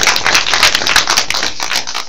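Audience applauding, many hands clapping at once in a dense, irregular patter.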